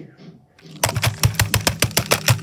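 A rapid, even mechanical clicking, about eight clicks a second with a low hum under it, starting almost a second in.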